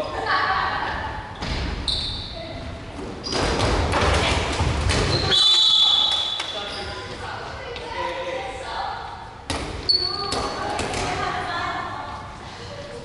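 Dodgeballs thrown in play, bouncing and striking the hardwood floor of an echoing sports hall in a series of sharp thuds, among players' shouts.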